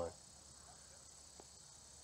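Faint, steady, high-pitched chorus of crickets in summer grass, with one soft tick about one and a half seconds in.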